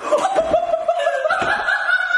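A man laughing; about halfway through, the laugh turns into a long, high-pitched held sound.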